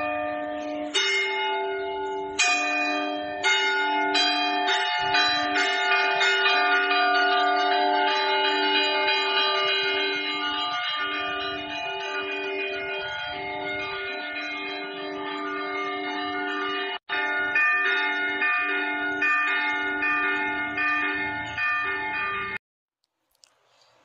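Church bells ringing, struck again and again, with the tones of each stroke overlapping and hanging on. The sound cuts out briefly about seventeen seconds in.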